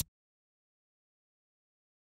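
Silence: a blank sound track, apart from the last instant of a transition swoosh cutting off at the very start.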